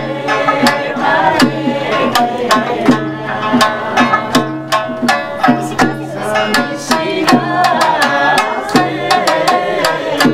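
Two sanshin plucked in a steady, bright rhythm, each note with a sharp attack, accompanying a woman singing an Amami folk song in a high voice.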